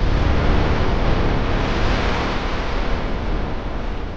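Loud rushing noise that starts suddenly, swells toward the middle and eases off near the end.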